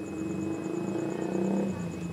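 A motor engine running: a low steady hum that dips slightly in pitch about a second and a half in.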